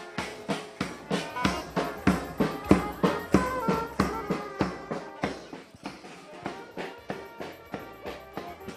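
Goan brass band playing: trumpets and trombones holding tunes over a steady drum beat of about three strokes a second. The music grows quieter in the second half.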